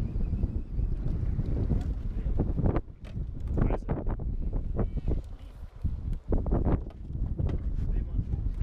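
Wind buffeting the microphone in a steady low rumble, with short indistinct bursts of voice breaking through now and then.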